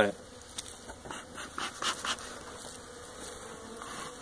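Honey bees buzzing around the hives as a faint, steady hum, with a few faint handling noises in the first two seconds.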